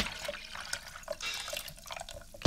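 Faint dripping water: a few soft drips about every half second over a low trickling hiss, in a short break in the background music.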